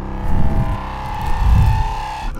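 Cinematic logo-reveal sound design: a loud, deep rumbling swell under held tones, one of them rising slowly, building up.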